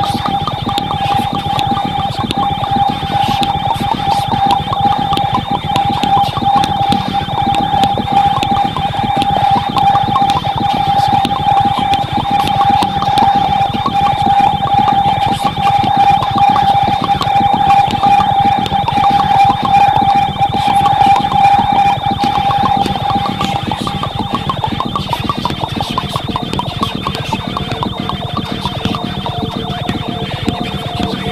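Improvised experimental ambient electronic music: a single steady, high electronic tone held over a dense, rapid crackling texture. A little past two-thirds of the way through, the tone fades and gives way to two lower held tones.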